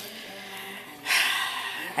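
A woman's loud, breathy sigh, a rush of breath lasting nearly a second that starts about halfway through.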